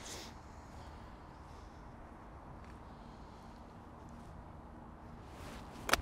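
Quiet outdoor background, then near the end a golf club swings with a brief swish and strikes the ball off the turf with one sharp click, taking a divot.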